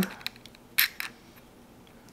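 Faint, light metal clicks as small washers are pressed onto the shaft of a vintage spinning reel during reassembly, with one brief scraping hiss a little under a second in.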